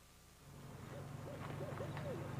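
An owl hooting, a quick run of short hoots, over a low steady hum that fades in about half a second in, after near silence.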